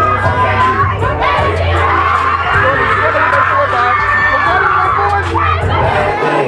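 A crowd of high-school students cheering and shouting together, a mass of voices that swells through the middle, over a steady low bass note from the dance music.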